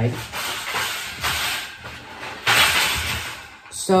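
Hissing background noise with no speech, fainter at first, then a louder stretch starting about two and a half seconds in that cuts off suddenly shortly before the end.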